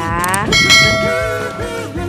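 A bell chime rings once about half a second in and dies away over about a second, the ding of a subscribe-button animation sound effect, over background music.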